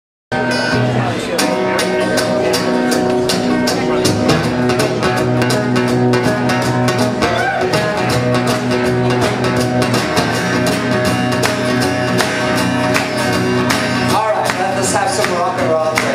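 Two steel-string acoustic guitars playing a rock and roll intro together live, strummed in a steady, even rhythm. The sound cuts in abruptly just after the start.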